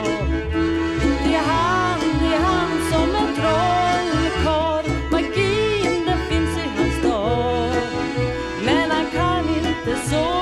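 Acoustic folk band music: a lead melody with sliding notes over a steady bass line and rhythmic accompaniment.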